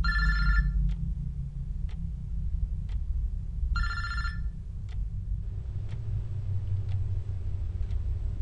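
BlackBerry mobile phone ringing for an incoming call: two short electronic rings of several high tones, the second about four seconds after the first, after which the ringing stops.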